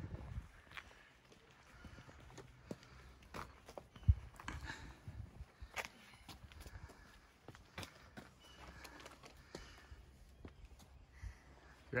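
Footsteps of people walking, irregular steps and scuffs, with one sharper, louder knock about four seconds in.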